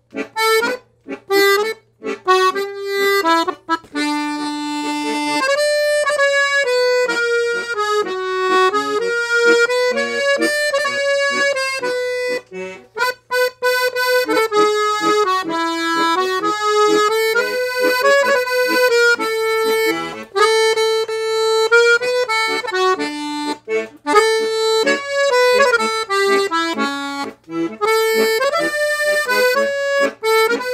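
Domino piano accordion, a full-size Italian instrument with four sets of treble reeds (LMMH), playing a tune: a melody on the treble keyboard over bass-button accompaniment, with a few brief breaks between phrases.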